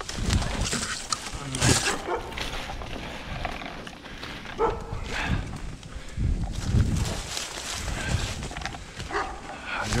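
Footsteps crunching through thick dry fallen leaves, with brush and twigs rustling and snapping underfoot in irregular bursts.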